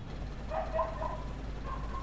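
Ambient background: a low steady rumble, with two faint pitched calls, one about half a second in and one near the end.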